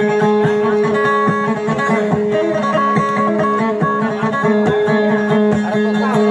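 Kutiyapi, the Maranao two-stringed boat lute, played solo in a fast run of plucked notes over a steady droning tone.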